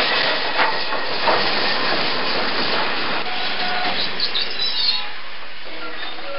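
Sound effect of a passenger train running past: a steady rushing noise with scattered wheel clicks. The noise drops a little about five seconds in.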